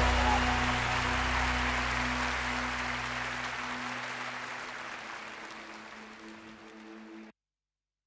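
Closing theme music with held tones, fading out steadily and then cutting off to silence about seven seconds in.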